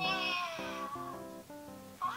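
A long, falling cat-like meow that fades out about a second and a half in, over background music of plucked guitar notes.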